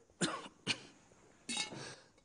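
A man coughing: three short bursts, the last one a little longer.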